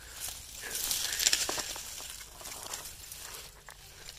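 Grass and cover-crop leaves rustling and crackling close to the microphone as a hand and the phone push through the vegetation, loudest about a second in and then fading.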